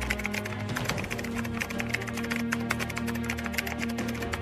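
Background music with held low notes, under a rapid, uneven clicking of a keyboard-typing sound effect.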